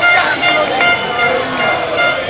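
Horns honking in several blasts of a steady high tone, over the noise of a shouting crowd.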